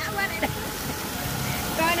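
Chicken drumsticks and pieces sizzling on a propane camp grill and in a frying pan over a gas burner: a steady hiss with a low rumble under it.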